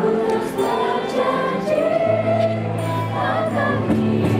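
A large group of graduates singing a song together in chorus, with musical accompaniment; a steady low note enters about halfway through.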